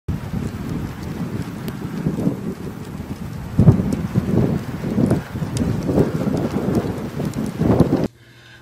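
Storm wind rushing and rumbling in irregular gusts, with a strong surge a little before halfway and repeated surges after it.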